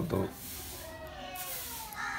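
A faint, long animal call that slowly falls in pitch, starting about half a second in.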